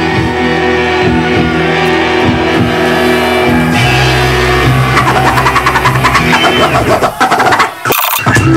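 Hip-hop DJ mix on vinyl turntables with a steady bass line. About five seconds in, the record is chopped into fast, evenly spaced stutters, as when a DJ scratches or cuts it with the crossfader. It dips briefly near the end.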